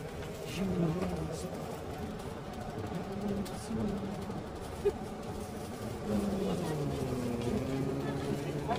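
Indistinct voices of people talking among shoppers, over a steady background din, with one short click about five seconds in.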